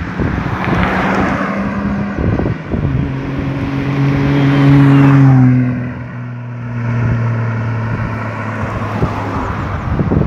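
A car drives past: its engine gets louder from behind, is loudest about five seconds in, then drops in pitch as it passes and fades as it moves away.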